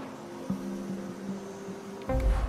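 Quiet background music: low held notes, with a single click about half a second in.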